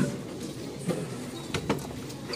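Low background noise of a crowded hall with a few light clicks and knocks, the loudest about halfway through and shortly before the end.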